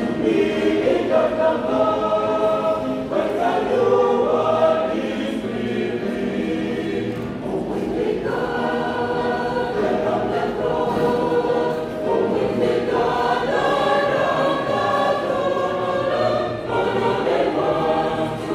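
A mixed choir of men's and women's voices singing a gospel hymn, in sustained phrases of a few seconds each with short breaths between them.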